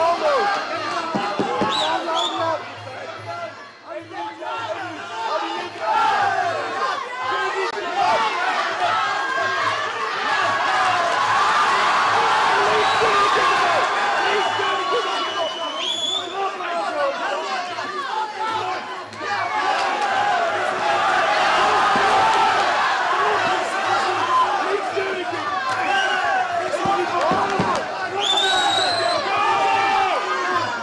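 Crowd of spectators at a kickboxing bout shouting and cheering, many voices at once, with a rising whistle about halfway through and again near the end.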